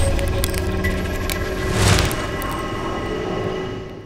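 Cinematic logo-reveal sound design: a deep, dark drone with steady tones over it and a whooshing swell about two seconds in, then fading out near the end.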